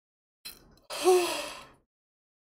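A woman's breathy, drawn-out vocal exclamation, a single voiced breath of under a second that falls in pitch and fades, like a dramatic sigh.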